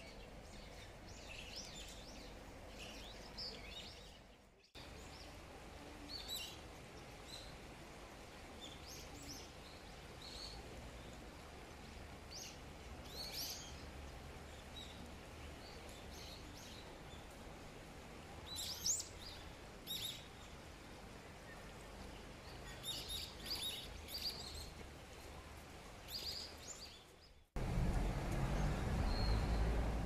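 Small birds chirping in short scattered calls over a faint, steady outdoor background. The sound cuts off abruptly twice, and near the end a much louder low rumble takes over.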